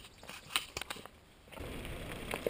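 Mountain bike rolling over a rocky dirt trail: scattered clicks and rattles from the bike and its tyres on stones, then a steadier rush of tyre and wind noise over the last half second.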